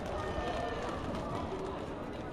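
Indistinct voices of people talking in a gymnasium, with a general background hubbub of a crowd.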